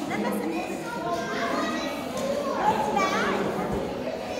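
Children's voices and chatter in a large hall, with a couple of rising high-pitched calls.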